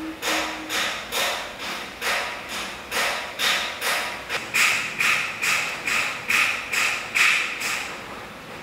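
Soft, steady patting on a sleeping baby's back, about two pats a second, with cloth rustling under the hand: a parent soothing an infant to sleep.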